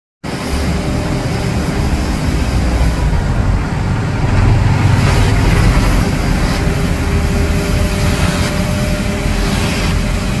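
Compact street sweeper running steadily as it sweeps the wet road, a loud low engine drone with a faint steady hum above it.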